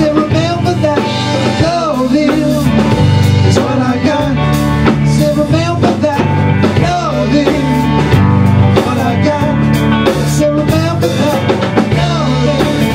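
Live rock band playing: drum kit, bass guitar and electric guitar together, with a lead melody that slides and bends in pitch over the top.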